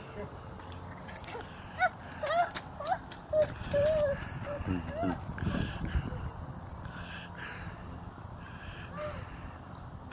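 A toddler's voice: a string of short babbling calls and squeals in the first half, rising and falling in pitch.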